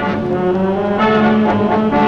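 Brass music playing held chords, the notes shifting about a second in.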